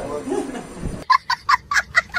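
A man talks briefly, then about a second in a young child breaks into high-pitched laughter in rapid short bursts, about four or five a second, with a thin sound that lacks any low end.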